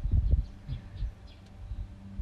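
Low thudding rumble of wind buffeting the microphone, strongest in the first half second and then dying down, over a faint steady hum.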